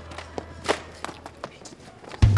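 Quick running footsteps and scuffling on a paved sidewalk, a series of short knocks, the loudest about two-thirds of a second in, over a low steady hum.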